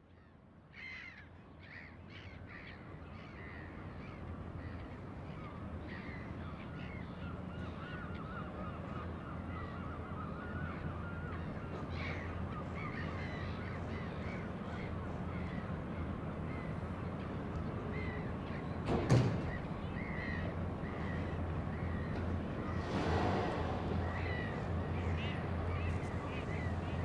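Birds calling over and over in short, repeated calls above a steady low rumble, the whole fading in from near silence. A single sharp knock about 19 seconds in.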